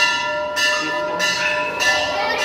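Metal temple bell rung repeatedly, struck about every half second, each strike ringing on into the next.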